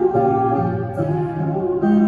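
Amplified acoustic guitar playing a slow pop ballad accompaniment, with sustained chords that change about every second.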